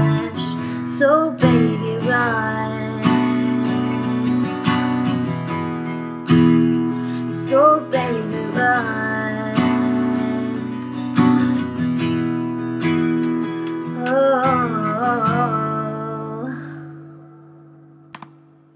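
Acoustic guitar strummed through the closing bars of a song, the last chord left ringing and fading away near the end.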